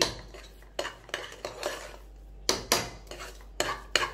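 A metal spoon stirring and scooping thick cooked broken-wheat kichadi in an aluminium pressure cooker, scraping the pot and knocking against its rim in a string of irregular clacks.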